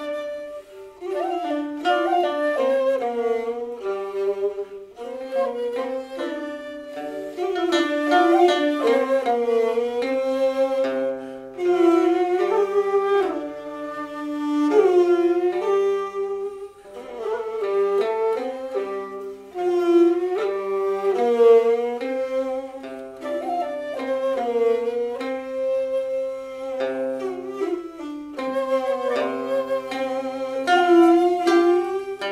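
A Cantonese instrumental trio playing a Cantonese melody: the dongxiao (vertical bamboo flute) and the yehu (coconut-shell bowed fiddle) carry the tune together, with the plucked qinqin lute accompanying.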